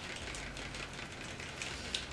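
Faint handling sounds of hands working with makeup: light rustling and small ticks over steady room noise, with a small click near the end.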